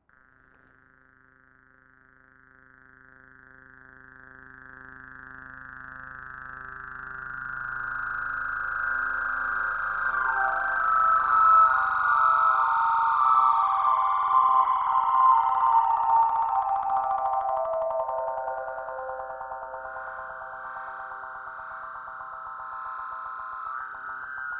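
A sustained electronic drone of several held tones, swelling slowly from faint to loud over about ten seconds. About midway a cluster of higher tones slides gradually downward, then the drone holds steady and eases off a little.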